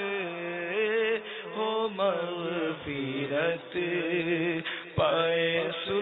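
A man's voice chanting a devotional supplication, unaccompanied, in slow phrases of long, wavering held notes with brief breaks for breath.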